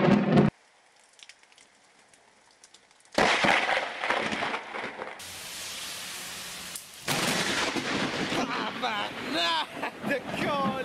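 Heavy rain pouring, coming in suddenly and loud about three seconds in after a short near silence, with a person's voice over it near the end.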